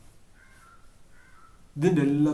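Three faint, short bird calls, each slightly falling in pitch, during a lull in a man's speech. The speech resumes loudly near the end.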